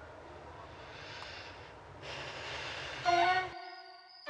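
Quiet room tone, then about three seconds in a wind instrument from the soundtrack music comes in on a long held note.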